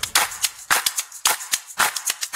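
An irregular run of sharp cracks, a few each second.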